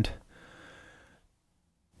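A man's faint breath lasting about a second, just after a spoken word ends, then near silence.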